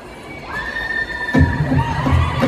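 One long, high-pitched scream from someone in the audience, held steady for over a second. About a second and a half in, an acoustic guitar starts strumming.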